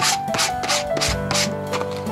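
Hand-sanding the edge of a thin wooden board with a sheet of sandpaper, in quick back-and-forth strokes about three a second, with background music underneath.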